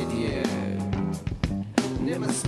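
A rock band playing live, guitar-led, over held low bass notes, with a few sharp hits cutting through.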